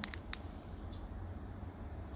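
A few quick plastic clicks of a key fob's buttons being pressed to lower the truck's air suspension, followed by one more click about a second in, over a steady low hum.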